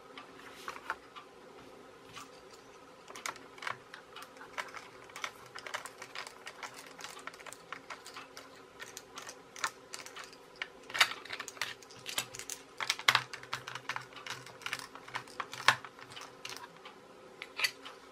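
Hard plastic toy housing being handled and taken apart by hand: irregular clicks and taps of plastic parts knocking together and against the table, the sharpest ones about eleven, thirteen and sixteen seconds in.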